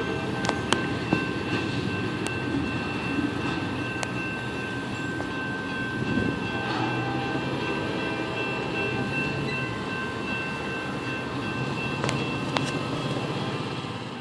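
Freight train tank cars rolling past over the crossing and around a curve: a steady rumble of steel wheels on rail with a few sharp clicks from rail joints, under steady high-pitched ringing tones.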